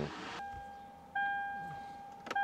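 Toyota 4Runner's in-cabin reverse warning chime as the truck is shifted into reverse: a single pitched electronic chime that sounds about a second in and fades away. A fainter tone of the same pitch comes just before it.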